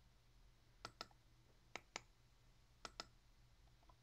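Faint computer mouse clicks: three quick double-clicks, each pair about a second apart from the next.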